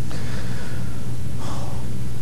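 A man's breathing: two audible breaths, the first lasting nearly a second, the second shorter about a second and a half in, over a steady low electrical hum and hiss.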